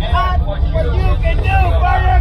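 Voices and music, with bending pitched lines like singing, over a steady low rumble; no distinct firework bangs.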